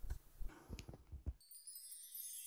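A few faint knocks and clicks, then, about one and a half seconds in, the high shimmer of a jingle-bell outro tune starts to fade in.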